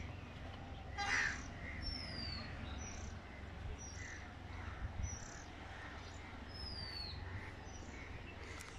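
Birds calling outdoors: a loud call about a second in, then scattered short calls and two falling whistles, over a steady low rumble.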